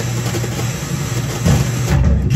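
FM tuner of a 1975 Fisher 432 stereo receiver being tuned between stations: steady, loud hiss and noise with broken bits of broadcast, played through its speakers.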